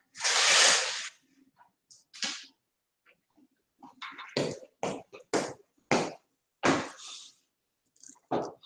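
A person moving about in a small room. A loud rushing noise lasts about a second at the start. Then, as he walks up close to the microphone, comes a run of five or six thumps about half a second apart.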